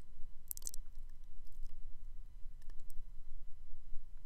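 A few faint clicks over a low steady hum, the clearest cluster of clicks about half a second in.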